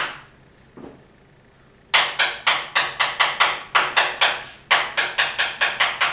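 Chalk writing on a blackboard: a brief scrape at the start and a single tap just under a second in. From about two seconds in comes a quick run of sharp taps and scrapes, about four or five strokes a second, as characters are written.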